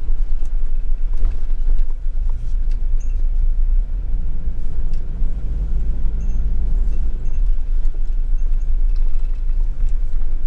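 Camper van driving on a narrow, winding road, heard from inside the cab: a steady low engine and road rumble that swells a little for a couple of seconds past the middle.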